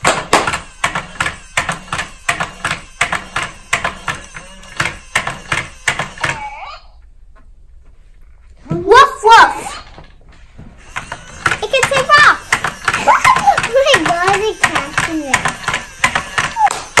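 Rapid hand clapping, about four to five claps a second for roughly six seconds: the clap command that sets the toy robot puppy walking. After a short pause, children's excited voices and squeals.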